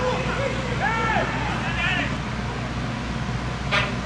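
Short, separate shouted calls from players on a football pitch over a steady low stadium background hum, with one sharp thud near the end.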